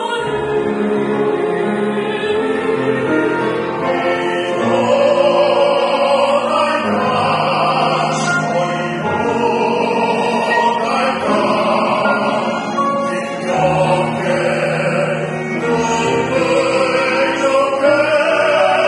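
Ensemble of classical singers, women's and men's voices together, singing a Korean art song in Korean in long, sustained phrases.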